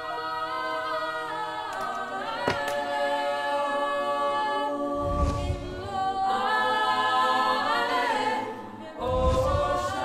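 Choral music: a choir singing slow, sustained chords, with a deep low boom twice, about five and nine seconds in.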